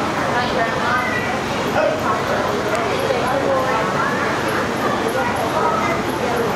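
Many children's voices talking and calling out over one another in an echoing hall, a steady babble with no single speaker clear.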